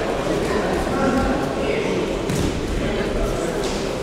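Indistinct chatter of many voices echoing in a large sports hall, with a few thuds as two judoka grapple on the mats.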